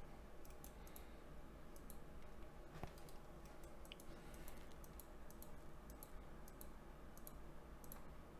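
Faint, light clicks at an irregular rate of a few per second, over a steady low hum from the recording.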